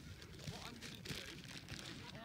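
Faint, distant voices of a coach and players talking on an open pitch. From about half a second in, a hissing rustle of noise on the microphone lasts about a second.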